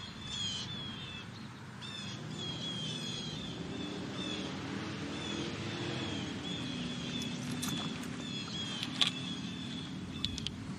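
Outdoor ambience with a small bird chirping over and over, short high notes about twice a second, above a low steady rumble. A sharp click comes near the end.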